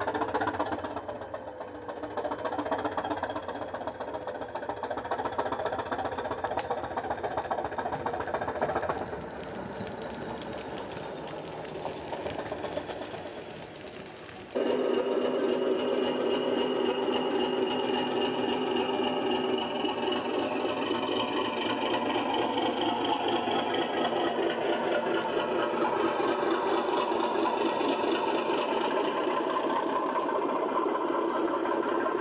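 Recorded diesel engine sounds from LokSound 5 DCC sound decoders, played through small EM2 speakers in OO gauge model trains. About halfway through, the sound cuts to a louder, steady engine running.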